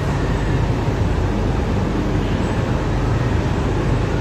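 Steady low hum with an even rushing noise throughout, the constant background of the room.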